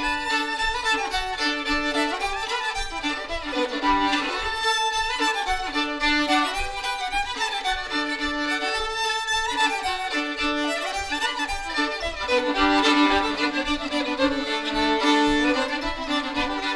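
Two fiddles playing a fiddle tune together, bowing over a steady held drone note, with a faint low beat keeping time underneath.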